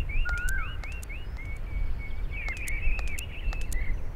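Birds chirping outdoors: quick runs of short rising chirps, about five a second, at the start and again near the end, over a steady low rumble of outdoor ambience with a few sharp clicks.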